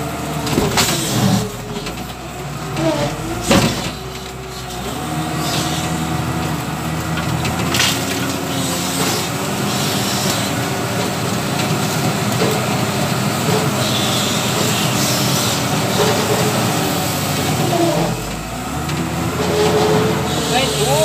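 W130 wheel loader's diesel engine running under load as the bucket pushes through brush, its pitch dipping and rising near the start and again near the end. Several sharp knocks and cracks come in the first few seconds.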